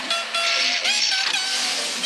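Cartoon background music with a vehicle sound effect as a cartoon truck drives away, a noisy rush through the middle with a short rising tone about a second in.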